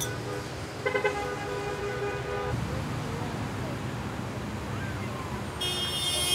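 Passing cars honking their horns over steady traffic noise: one horn sounds about a second in and is held for about a second and a half, and a second horn starts near the end.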